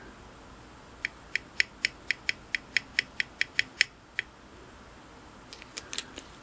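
A rapid, even run of light, sharp ticks, about four a second, for roughly three seconds, then one more tick and a few fainter clicks near the end.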